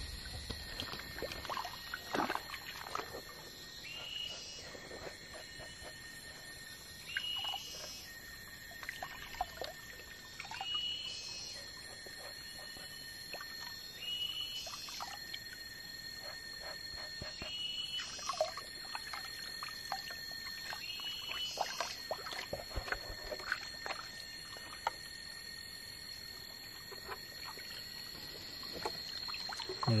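Water swishing and splashing in a gold pan as it is swirled and dipped in a shallow stream, washing off the light sand to leave black sand and gold flakes. Behind it runs a steady high-pitched tone, and a short rising call repeats about every three and a half seconds.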